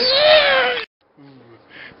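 A single loud, high, drawn-out cry that rises and then falls in pitch, lasting under a second and cut off abruptly.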